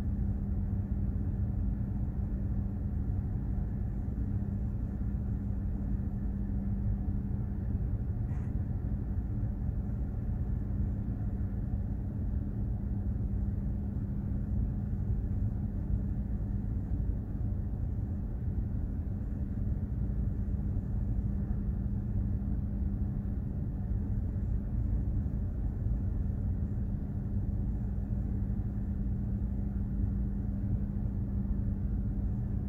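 Container ship under way, heard aboard: a steady low rumble with a constant hum from the engine and hull vibration. There is one faint tick about eight seconds in.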